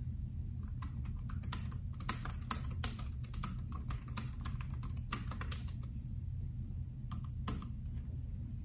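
Bluetooth keyboard keys clicking as a sentence is typed: a quick run of keystrokes from about a second in, a pause, then a couple of last strokes near the end.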